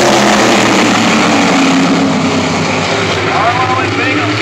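A pack of modified race cars running at full throttle around the oval just after the green flag, their engines blending into one loud, steady drone.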